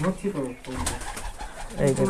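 Domestic pigeons cooing in the loft, low and soft, with some speech over them.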